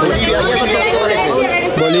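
Several voices talking over one another: a pack of reporters calling out questions at close range, with one voice saying "Bolivia" near the end.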